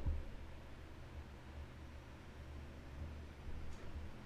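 Faint steady low hum of a gaming PC's cooling fans running under benchmark load, with a brief soft sound right at the start.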